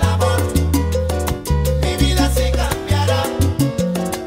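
Salsa band recording playing, with a bass line moving under repeated chords and a steady percussion beat.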